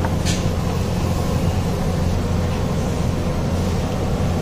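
Steady low rumble, like engine or traffic noise, with a single short sharp click about a third of a second in.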